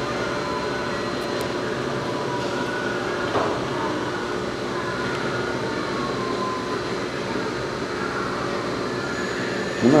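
Brewhouse machinery running steadily: a constant mechanical drone with several whining tones held through it.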